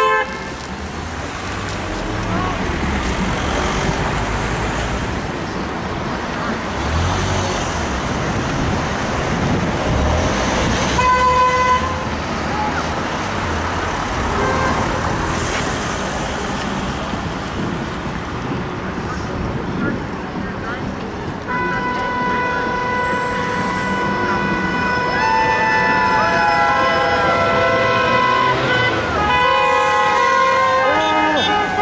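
Passing road traffic with cars sounding their horns in support: a short honk about eleven seconds in, then long held horn blasts from several vehicles over the last third. Car and van engines and tyres run underneath.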